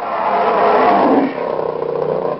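A loud animal roar sound effect that swells to its peak in the first second, then carries on a little softer.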